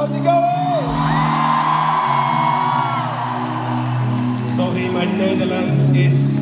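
Live band intro of sustained keyboard chords that change every second or two, under a cheering arena crowd with whoops and a long held high note.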